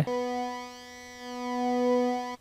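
Sustained single note from the Native Instruments Massive software synthesizer, one steady pitch with many overtones. Its level dips about half a second in and swells back up as the built-in EQ's low-shelf setting is adjusted.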